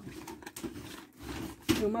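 A cardboard medicine box handled and rubbed close to the microphone: rustling and scraping with small clicks, ending in a louder knock just before a woman starts speaking.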